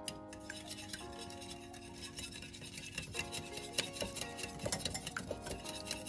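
Wire whisk beating raw eggs in a glass bowl: a rapid run of light ticks and scrapes of the wires against the glass, a little busier in the second half.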